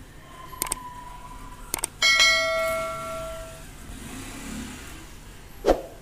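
Subscribe-button animation sound effects: a thin steady tone with two pairs of mouse clicks, then a loud bell chime that rings and fades over about a second and a half. A short thud near the end.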